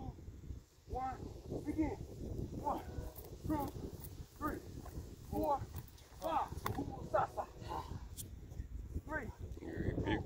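Indistinct voices of several people talking during group exercise, over a low steady rumble.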